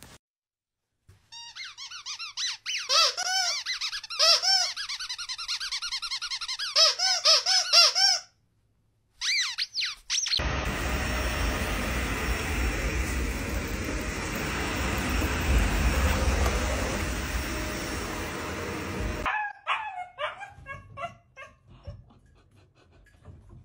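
A dog whining in a quick string of high, squeaky, rising-and-falling cries for about seven seconds. A vacuum cleaner then runs steadily for about nine seconds.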